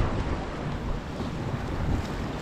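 Wind buffeting the microphone over waves washing against jetty rocks, a steady rumbling hiss.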